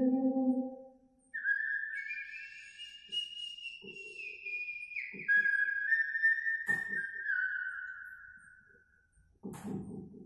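A whistled tune of a few long held notes that step up and down in pitch, then trail off. A low held note dies away in the first second, and a few soft knocks fall under the whistling.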